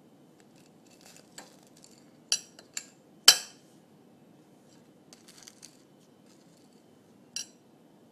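Scattered light taps and clinks of a utensil against a dish, the loudest about three seconds in and a last one near the end.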